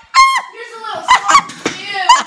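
A child's wordless high-pitched cries and yells: one short cry near the start, then a run of shorter ones.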